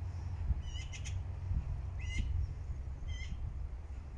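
A small bird giving short, high chirping calls, four of them roughly a second apart, over a steady low rumble.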